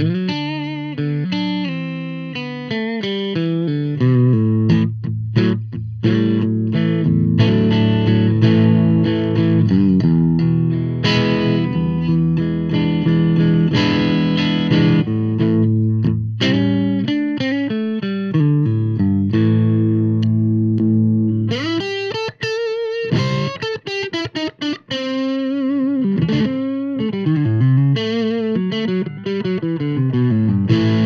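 Semi-hollow 335-style electric guitar strung with Elixir PolyWeb coated strings, played amplified: chords and single-note lines with a warm tone. About two-thirds of the way in, held notes waver with vibrato.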